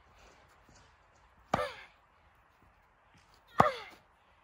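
Two tennis forehand strokes about two seconds apart. Each is a sharp hit with a short vocal grunt that falls in pitch.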